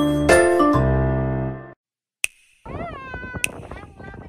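Background music with bell-like chiming tones that cuts off abruptly under two seconds in. After a short silence broken by a single click, a new passage begins with a high wavering, sliding voice-like sound over sharp clicks about a second apart.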